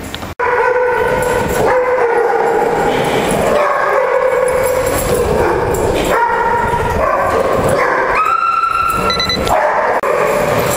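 A dog whining and yipping almost without pause, high-pitched, holding each note briefly and then jumping to another pitch.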